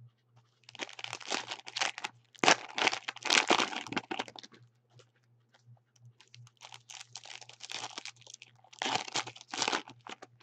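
Plastic wrappers of trading-card packs crinkling and tearing as a pack is pulled open. There is a long stretch of crackling starting about a second in, then shorter bursts near the end.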